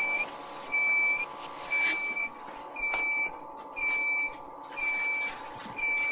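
ECMO circuit's air bubble detector alarm beeping about once a second, each beep a high steady tone about half a second long, over a faint steady equipment hum. The alarm signals air detected in the arterial blood line.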